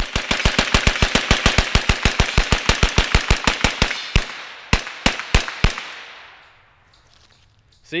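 Sterling Mk.6 9mm semi-automatic carbine fired rapidly, about eight shots a second for some four seconds, then three slower shots about half a second apart. The echo fades away after the last shot.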